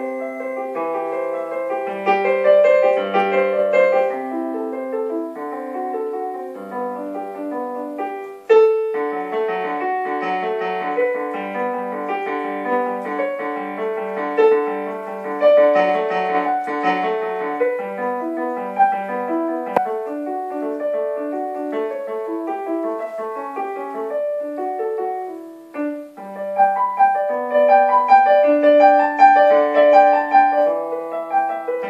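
Digital piano played with both hands, a steady run of notes in the middle register. The playing breaks off briefly about eight seconds in and again near 25 seconds, then picks up louder.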